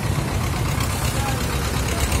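Road traffic: a steady low rumble of nearby idling and passing vehicle engines.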